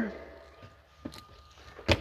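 Quiet room tone, then one sharp click near the end as the cargo-area floor panel of the SUV's boot is taken hold of to lift it.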